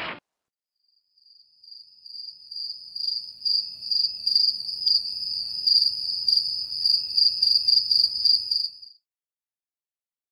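Cricket chirping: a steady high-pitched trill that fades in about a second in, swells and dips about twice a second, and cuts off suddenly near the end.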